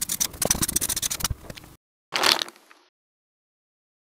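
Felt-tip marker scratching across paper in quick strokes as letters are written, cutting off abruptly a little under two seconds in. A short noisy rush follows just after two seconds.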